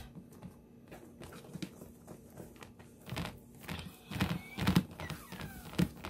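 Hands pressing and pushing pizza dough out across a metal pizza pan, with soft scattered taps and knocks of the pan on the countertop and a few louder thumps about three to five seconds in.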